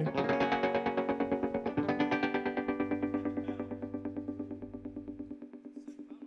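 Electric guitar chord left ringing at the end of a song, pulsing rapidly through an effects pedal and slowly fading. A low note joins underneath about three seconds in and cuts off shortly after five seconds.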